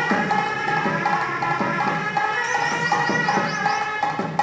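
Live street music from a Gangireddu decorated-bull troupe: a reed pipe (sannayi) playing long held notes over a steady beat on a drum (dolu).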